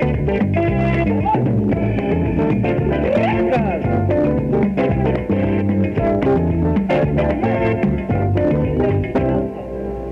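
A tropical dance band playing an instrumental passage: electric guitar and bass guitar over a steady, driving beat.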